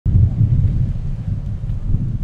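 Wind buffeting the camera microphone: a loud, uneven low rumble.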